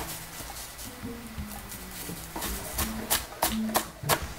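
Chef's knife chopping a shallot on a plastic cutting board: several sharp taps in the second half, about three a second, over light background music with held notes.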